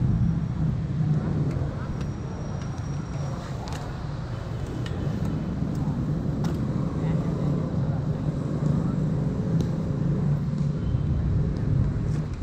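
Steady low rumble of street traffic, with a few scattered sharp clicks and knocks.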